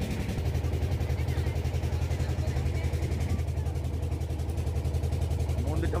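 Boat engine running steadily with a fast, even low throb that grows heavier about half a second in.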